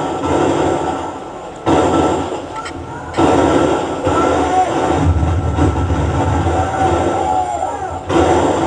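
Combat-video field audio played back through a computer speaker: noisy, muffled outdoor sound with men's voices. From about five seconds in, a deep rumbling boom comes in as an explosion hits the domed building.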